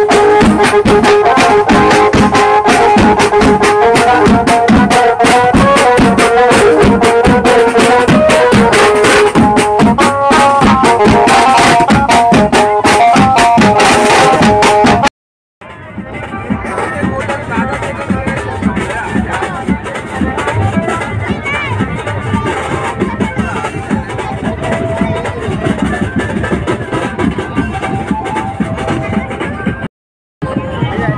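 A street band of tom drums and cymbals beaten fast and hard under a loud melody line, for about the first half. It cuts off abruptly, and a quieter, steady mix of outdoor noise and faint music follows.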